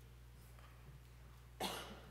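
A single short cough about a second and a half in, over quiet room tone with a steady low hum.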